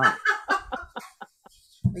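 A person laughing in short repeated bursts, fading out after about a second, heard over a video call. Speech starts again near the end.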